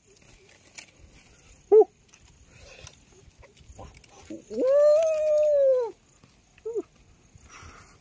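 A man's high, wordless "woo" call lasting about a second and a half, rising in pitch and then slowly falling. It comes after a short yelp about two seconds in and is followed by another short one near the end.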